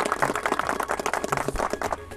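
A small crowd applauding, a dense patter of hand claps that fades slightly near the end.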